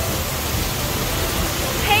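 Steady rushing of a nearby waterfall, an even wash of falling water with a deep rumble underneath.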